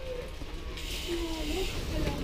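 Faint, indistinct voices over a steady low rumble, with a hiss coming in about a second in.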